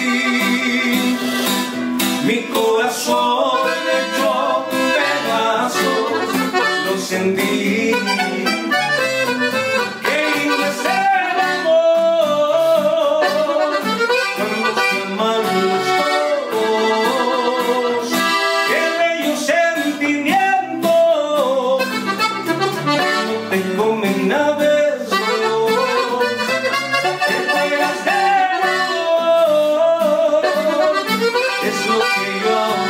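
Norteño music played live: a button accordion leading over a strummed acoustic guitar, with a lead singer and harmony voices, no bass.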